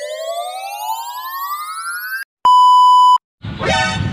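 Electronic loading-screen sound effect: a synthetic tone rising steadily in pitch for over two seconds, then after a brief gap a single steady beep lasting under a second.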